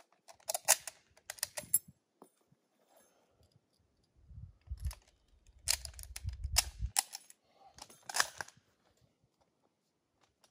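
Metallic clicks and clacks of a Lee-Enfield SMLE No. 1 Mk III rifle being loaded from empty: the bolt is worked and rounds are pushed into the magazine, in several short bursts of clicks. A low rumble sits under the middle bursts.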